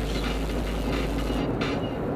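Steady road and tyre noise heard inside a car's cabin at freeway speed, with a deep rumble that drops away about a second and a half in.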